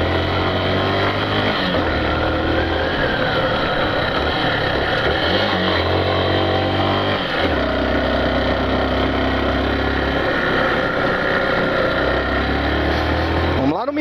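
Yamaha Factor 150 motorcycle's single-cylinder four-stroke engine running steadily under load while climbing a steep hill, heard from the rider's position with road and wind noise.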